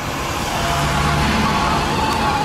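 Street traffic: a vehicle engine hums steadily under road noise, growing slightly louder.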